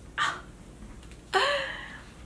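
A woman's short breathy vocal sounds: a quick breath just after the start, then a louder gasp-like exclamation about a second and a half in.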